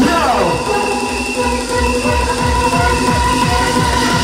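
Fast hardcore rave track playing loud over a club sound system: a kick drum about three beats a second under sustained synth chords, with a falling synth sweep right at the start.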